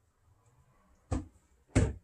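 Two sharp knocks about half a second apart, a little past the middle, from the Vitamix blender's plastic container and lid being handled with the motor stopped.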